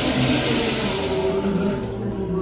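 A Kohler Highline toilet flushing through its flushometer valve: a loud rush of water into the bowl that eases slightly near the end.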